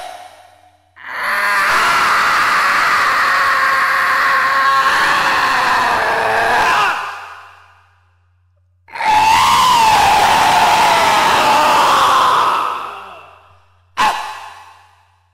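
Two long, noisy, wavering blown tones on an edited soundtrack, each lasting several seconds and fading out, with a silent gap between them.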